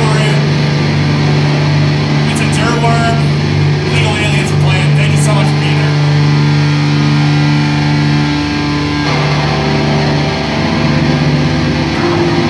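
Loud, steady low drone from the band's amplified guitar rig left sounding between songs, with higher held notes above it that change about nine seconds in.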